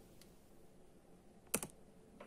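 Computer keys clicked in a quick run of three sharp clicks about one and a half seconds in, over faint room tone.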